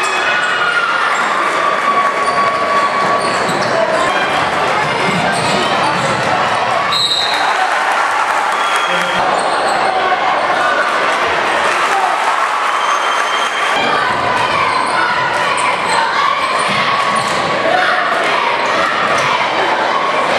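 Basketball being dribbled on a hardwood court in a gym, under steady chatter and calls from a packed crowd of spectators.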